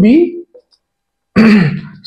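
A man's voice: a short spoken word, a pause of about a second, then another short vocal sound.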